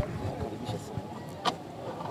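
Quiet background noise, with one short click about one and a half seconds in.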